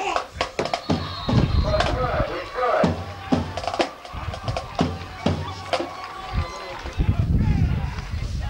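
Band music with irregular drum beats and a few held notes, mixed with shouting voices.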